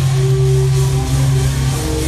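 Live blues-rock band playing: electric guitars over bass guitar and drums, with a held low note under the guitar lines.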